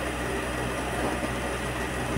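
Steady room noise in a hall: an even hiss with a low, constant hum beneath it, between a speaker's sentences.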